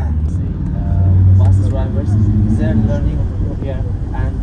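Low, steady rumble of a road vehicle's engine and tyres heard from inside while driving, with muffled voices talking over it.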